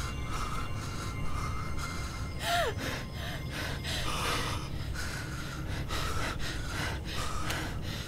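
Frightened, gasping breaths repeating throughout, with a brief falling whimper about two and a half seconds in, over a steady low hum.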